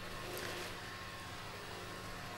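Faint, steady background hum and hiss: room tone.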